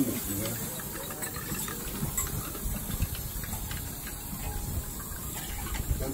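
Steady hiss and low rumble with a few faint clicks as a spoon stirs coffee in a copper cezve.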